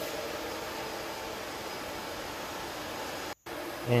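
Steady rushing whir of the cooling fans on ASIC and GPU cryptocurrency mining rigs, with a few faint steady hum tones in it. The sound drops out completely for a split second near the end.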